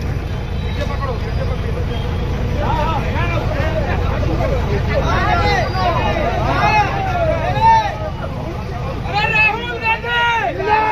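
Several voices calling out over one another, a crowd's hubbub, over a steady low rumble; the voices come in about three seconds in and are busiest in the second half.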